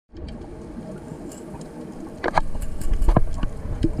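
Muffled underwater sound heard through a camera's waterproof housing: a low rumble with scattered sharp clicks and knocks, growing louder about halfway through.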